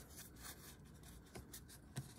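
Faint rubbing and slight clicks of paper trading cards being handled and shuffled in the hands.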